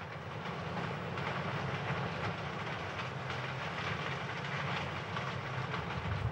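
Coal conveyor belt running: a steady low hum under an even rushing, rattling noise.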